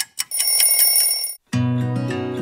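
A clock ticking about five times a second, then an alarm-clock bell ringing for about a second and cutting off sharply. Acoustic guitar music starts just after.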